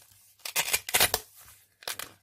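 Handmade paper goodie bag being handled: a cluster of quick dry paper rustles near the start, then one more near the end.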